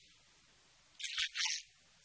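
A man speaking, the voice thin and tinny with its lower range missing: about a second of pause, then a short burst of words.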